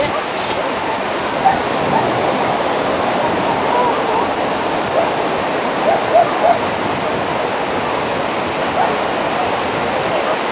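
Steady wash of small breaking waves mixed with the distant voices and shouts of swimmers and onlookers, a few short shouts standing out around five to six seconds in.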